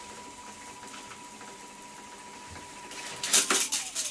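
AKAI 4000DS reel-to-reel tape recorder rewinding with a steady thin whine. A little over three seconds in, the tape end runs off and there is a rapid clatter of clicks as the tension arm drops and trips the auto-stop, shutting the machine off.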